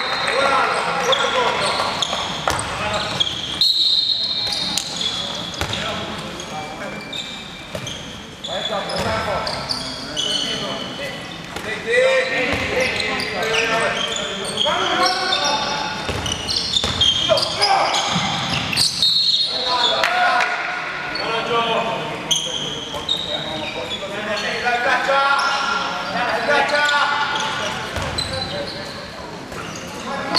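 Handball game sounds in a large, echoing sports hall: a handball bouncing on the wooden court, players' indistinct shouts and calls, and short high squeaks of sports shoes on the floor.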